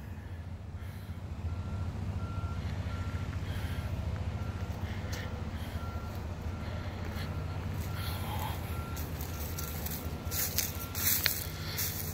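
The inline-six Detroit DD15 diesel of a 2016 Freightliner Cascadia idling steadily, with a faint high warning beep from the truck's cab repeating about 1.4 times a second.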